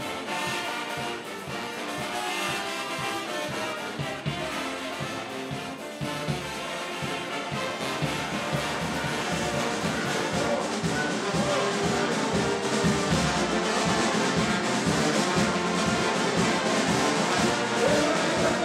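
A large brass band of trumpets and sousaphones playing a tune together over a steady low beat, louder in the second half.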